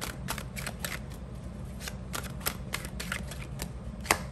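A tarot deck being shuffled and handled by hand: an irregular run of quick, crisp card flicks and slaps, about four a second.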